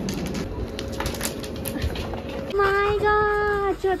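Station and carriage noise with clicks, then from about halfway through a dog whining in long, high, drawn-out notes.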